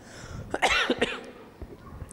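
A man coughs once, a short hard burst about half a second in.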